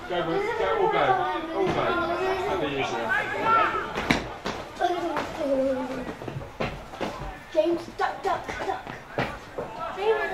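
Indistinct talking and chatter of people close to the microphone, with a couple of sharp knocks about four and nine seconds in.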